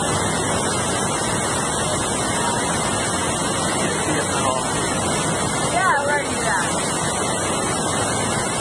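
The steady rush of Niagara's Horseshoe Falls pouring past the portal of a rock tunnel behind the falls.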